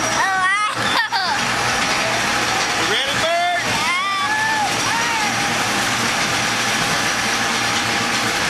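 Steady rushing noise of a rollercoaster ride, with a young girl's high-pitched voice calling out a few times, near the start and again around three and four seconds in.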